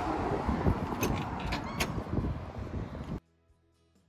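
Wind on the microphone with a few sharp clicks of a front door's handle and latch as the door is opened. About three seconds in, this cuts off suddenly to quiet background music.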